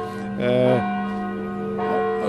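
A church bell ringing, its tones hanging steadily in the air.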